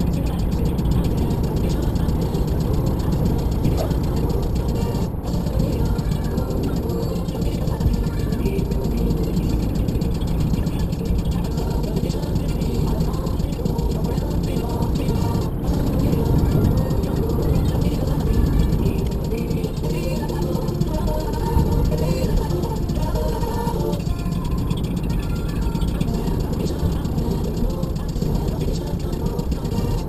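Steady engine and tyre rumble heard inside a car at speed, with music playing over it.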